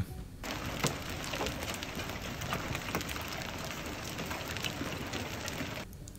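Hailstorm with heavy rain: a dense hiss of falling rain with many sharp ticks of hailstones striking hard surfaces. It starts abruptly about half a second in and cuts off just before the end.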